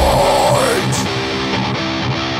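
Metalcore song in which drums and bass drop out and a lone electric guitar plays single picked notes, while a falling glide fades out in the first second.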